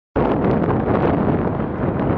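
Wind blowing across the microphone, a loud, steady rough hiss that starts abruptly a moment in.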